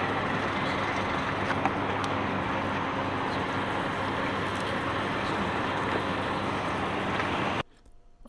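A steady mechanical hum with an even rushing noise behind it, which cuts off abruptly about seven and a half seconds in.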